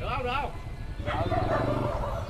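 A dog's short call about the start, over background voices and the low steady running of a motorbike engine.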